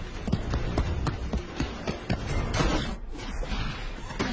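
Action film soundtrack: a tense music score mixed with hurried running footsteps and irregular knocks and thuds, with a louder noisy burst a little past halfway.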